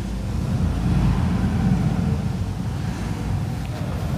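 Low, steady rumbling noise that swells a little around the middle.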